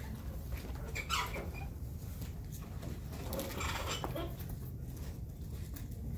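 Classroom room tone: a steady low hum with a few brief faint noises, one about a second in and another between three and four seconds.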